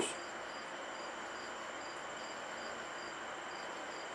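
Faint high-pitched insect chirping, short chirps repeating about three times a second, over steady room hiss.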